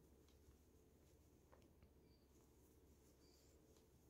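Near silence: room tone with a low hum and a few very faint, brief ticks.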